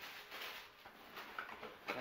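Quiet rustling and handling of shipping packaging: a plastic air-pillow wrap being put aside and hands moving in a cardboard box, with a few soft scrapes.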